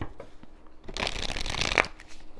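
Tarot deck being shuffled by hand: a few light card clicks, then a quick fluttering run of cards through the hands lasting under a second in the second half, ending sharply.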